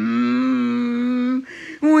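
A synthetic cartoon voice holds one vowel at a steady pitch for about a second and a half, then cuts off into a brief, quieter hiss.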